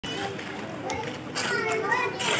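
Children's voices chattering and calling in the background, with no clear words, getting louder about halfway through.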